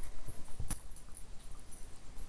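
Low rustling handling noise on a handheld camera's microphone, with one sharp click about two-thirds of a second in.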